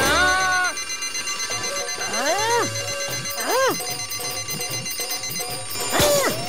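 Cartoon soundtrack: a fast, high-pitched alarm-clock-like ringing runs under short wordless vocal cries that swoop up and down in pitch, one held at the start and two more around the middle.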